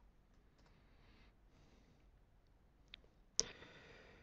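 Faint computer keyboard and mouse clicks over near-silent room tone, with one sharper click about three seconds in and a brief hiss near the end.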